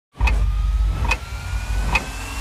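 Trailer sound design: a heavy low rumble under a thin tone that rises slowly in pitch, struck through by three sharp hits a little less than a second apart.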